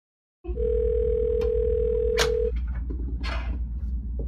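A telephone tone: one steady pitch held for about two seconds over a low hum, with a sharp click near its end.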